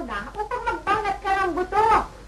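A man crying loudly in a run of high, wavering sobbing wails, the loudest just before the end, where it stops abruptly.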